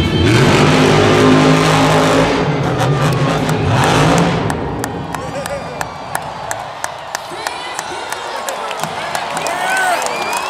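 Bro Camino monster truck's supercharged V8 running hard at high revs for the first four seconds or so, then fading out about five seconds in. Crowd noise with scattered claps and shouts follows.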